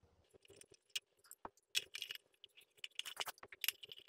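Faint clicks and small rattles of bulbs and fitting parts knocking against a ceiling spotlight fixture as Philips Hue smart bulbs are fitted by hand, the clicks coming thicker in the second half.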